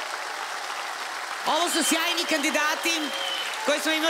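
Studio audience applauding, with a woman's voice starting to speak over the applause about a second and a half in.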